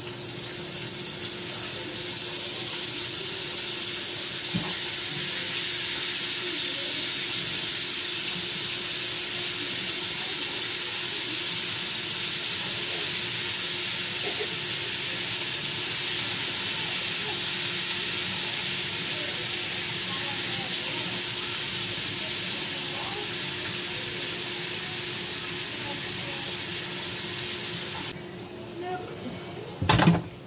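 Shrimp sizzling in a hot pan: a steady hiss with faint crackles that cuts off abruptly near the end.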